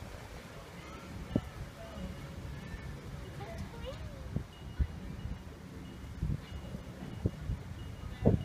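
Wind rumbling on the microphone outdoors, with faint distant voices and a few thin, high whistling tones over it.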